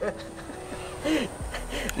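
Quiet background music with a few held notes, under faint, indistinct voices; a low rumble comes in near the end.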